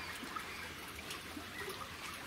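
Faint, steady outdoor background noise, with a single tiny click about a third of a second in.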